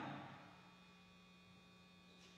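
Near silence with a low, steady electrical mains hum. The last spoken word fades away in the church's echo during the first half second.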